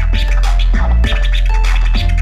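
DJ scratching a vinyl record on turntables over a beat with a deep bass, quick scratch strokes cutting back and forth on top of the music.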